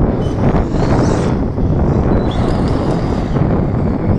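Wind buffeting the microphone, with the high whine of two electric RC trucks' motors and tyres as they accelerate away across asphalt.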